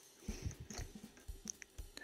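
Faint, irregular clicks and soft knocks of a USB plug being fumbled against a motorcycle dashboard USB socket, not going in because the second socket is mounted upside down.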